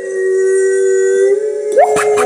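Layered human voices, all made by mouth, holding a long, steady chord of sung or hummed notes with the beat dropped out; near the end one voice slides quickly up into a higher note and the percussion begins to come back.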